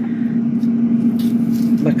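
Steady hum of a countertop air fryer's fan and heater running, with faint rustles of green onions being handled on a plastic cutting board.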